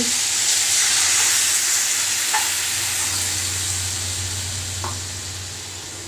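Cubed potato, ridge gourd and drumstick pieces frying in oil in a steel kadai: a steady sizzle that slowly grows quieter, with a faint tick or two of the metal spatula.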